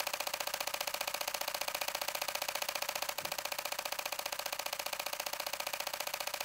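Canon EOS R10 shutter firing a continuous high-speed burst in electronic-first-curtain mode, its mechanical second curtain closing each frame. It makes a fast, even rattle of about fifteen clicks a second.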